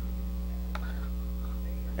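Steady electrical mains hum: a low, even buzz with a ladder of overtones, holding unchanged. There is a single faint click about three-quarters of a second in.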